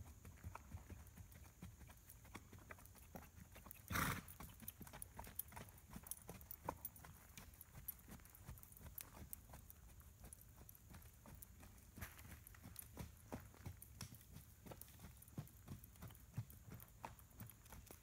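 Faint, steady hoofbeats of an Icelandic mare trotting on a dirt arena. A short louder noise comes about four seconds in.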